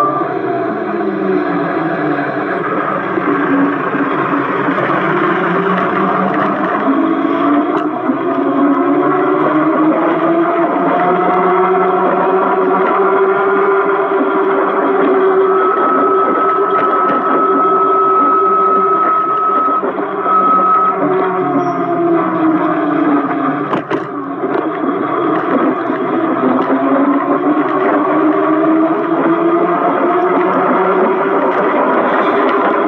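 Electric motor of a Fiido M21 fat-tyre e-bike whining while riding, its pitch rising and falling slowly as the bike speeds up and slows down, over road noise. A steady high tone sounds for about four seconds past the middle.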